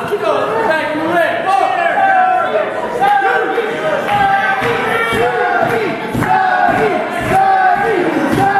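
Small live-wrestling crowd shouting and yelling over one another, with several voices overlapping throughout.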